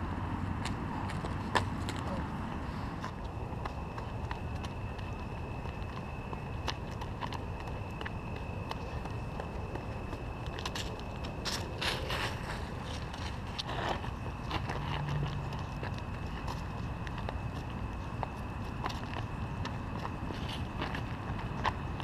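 Steady outdoor background noise with wind rumble on a moving camera's microphone, a thin steady high whine that starts a few seconds in, and scattered light clicks.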